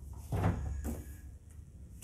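A knock and short scrape at a glass-shelved display cabinet about a third of a second in, followed by a lighter knock just under a second in.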